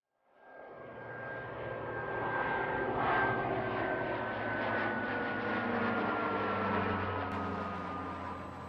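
Light propeller aircraft flying past, fading in from silence and then running steadily, its engine note sliding slowly lower in pitch as it passes.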